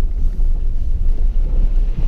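Vehicle driving over a muddy, rutted dirt road, heard from inside the cab: a loud, steady low rumble of engine and tyres.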